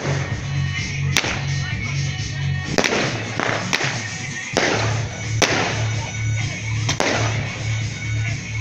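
Music with a steady pulsing bass beat, over which fireworks go off in several sharp, irregularly spaced bangs, each followed by a short crackling decay.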